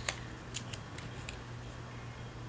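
Washi tape being peeled up and pressed back down on a paper planner page: a few short, sharp crackling ticks in the first second and a half.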